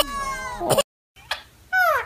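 A toddler crying in a long, slowly falling wail that cuts off abruptly. After a moment of silence comes a short, high, falling meow-like call.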